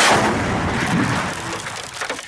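A single loud blast from an improvised artillery launcher tube firing, its noise trailing off over the next two seconds.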